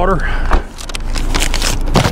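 Camera and handling noise with a sharp knock about half a second in and another near the end, over a steady low rumble.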